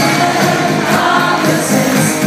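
Live schlager concert music from an arena stage: a band playing, with singing, heard loud from among the audience in the hall.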